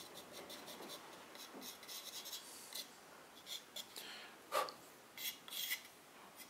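Fingertip and a small blade lightly rubbing and scraping the surface of a raw-glazed stoneware mug: faint, irregular scratchy strokes, with a few louder scrapes in the second half.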